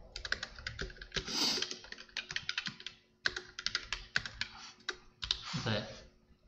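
Typing on a computer keyboard: quick runs of keystrokes with a short pause about three seconds in.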